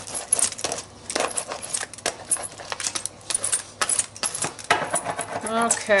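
A small hand brayer loaded with white gesso being rolled back and forth over a textured journal page, making quick, irregular clicks and scrapes.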